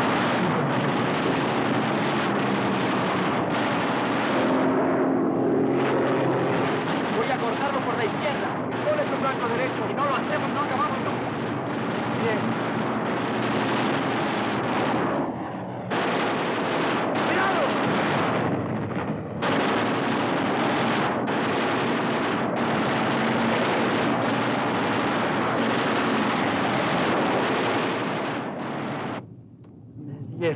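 Aerial-battle soundtrack: aircraft engines running together with machine-gun fire, loud and continuous, with abrupt jumps in the sound at the picture cuts and a sharp drop near the end.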